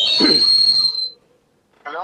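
A voice saying "hello" over a telephone line, with a steady high-pitched whistle riding on it that stops about a second in. Near the end the voice and the whistle start again.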